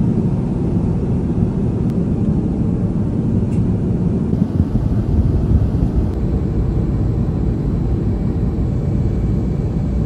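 Cabin noise inside an Airbus A350 airliner in flight: a steady, loud, low rumble of engines and rushing air.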